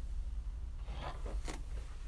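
A hairbrush drawn through a mannequin head's long hair in short strokes, a couple of them in the second half, the sharpest about halfway through, over a steady low hum.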